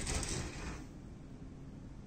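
A short rattle with a rush of noise in the first second, then a faint steady hum inside a passenger railway carriage.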